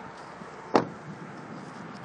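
A 2015 Toyota Corolla's rear door being shut: one sharp thud about three-quarters of a second in, over a faint steady hiss.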